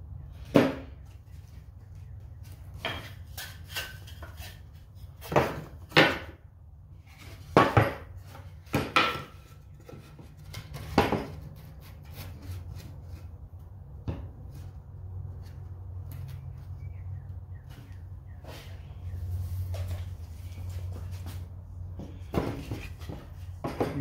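Wooden boards knocking against each other and the plywood work surface as they are handled and glued into place: about a dozen irregular knocks, most in the first half, over a low steady hum.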